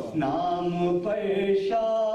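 A man's voice chanting a melodic recitation: a falling slide at the start, then long held notes, the last held steadily from near the end.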